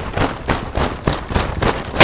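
Rapid, uneven knocking and rustling, about four or five knocks a second, from a makeshift hut of pallets and cement bags being shaken from inside.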